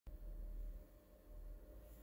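Faint room tone with a steady low hum.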